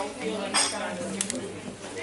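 Cafe clatter: dishes and cutlery clinking, with a couple of sharp clinks a little over a second in, over indistinct background voices.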